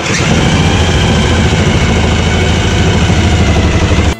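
A corded power tool starts suddenly and runs loud and steady.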